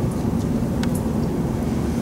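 A steady low rumble of background room noise, with two faint clicks about half a second and a second in.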